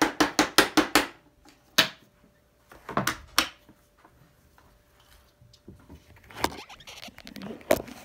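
Clear plastic vacuum dust cup being smacked by hand to knock its debris out: a quick run of about eight sharp knocks in the first second, then a few single knocks spaced out after it.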